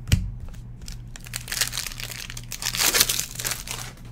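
A plastic trading-card pack wrapper crinkling as it is handled and torn open, building to its loudest near the end, after a sharp knock right at the start.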